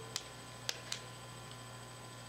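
Steady electrical hum of a room's microphone and sound system during a pause, with three short clicks in the first second.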